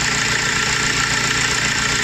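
Car engine idling, heard close up at the alternator, with a steady light scratching noise from the alternator, which the mechanic puts down to a worn alternator bearing.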